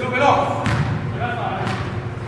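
An indoor soccer ball thudding on a hard gym floor and off players' feet: three sharp thuds about a second apart, with men's voices calling over them.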